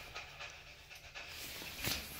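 Faint panting breaths with a few soft knocks, and a short louder rustle near the end.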